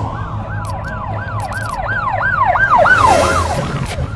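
Electronic outro music: a synth tone sweeping up and down about three times a second, swelling louder and then fading near the end, over a low bass drone, with a few glitchy clicks and a brief hiss.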